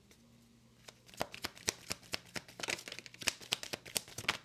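A tarot deck shuffled by hand: quiet at first, then about a second in a quick, irregular run of sharp card snaps and flicks.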